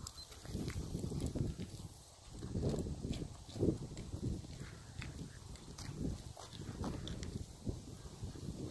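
A dog panting close to the microphone in irregular breathy bursts.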